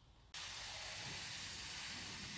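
Hand-held garden sprayer spraying a fine mist of water onto seed trays: a steady hiss that starts suddenly just after the beginning and keeps going.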